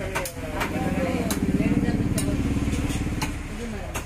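Cleaver chopping chicken on a wooden log chopping block: sharp knocks every half second to a second. A buzzing motor engine swells under the chops from about half a second in, is loudest in the middle and fades out a little after three seconds.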